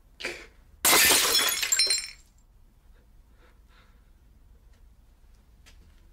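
A glass milk bottle dropped onto a hard kitchen floor and shattering: a brief softer sound, then, about a second in, a loud crash with glass pieces ringing and clinking for about a second.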